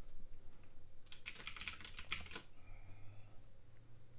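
Computer keyboard typing a short word: a quick run of about eight keystrokes starting about a second in and lasting just over a second.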